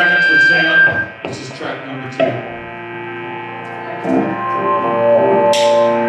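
Live rock band playing electric guitar, bass and drums, with sustained ringing guitar notes. The music drops back in the middle and builds again, with cymbal crashes near the end.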